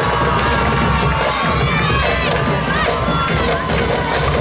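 Stadium crowd cheering and shouting, with one long held shout over the noise.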